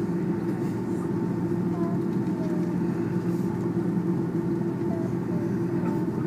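Steady low drone of an Airbus A330-300's engines and airframe, heard from inside the passenger cabin as the airliner taxis after landing.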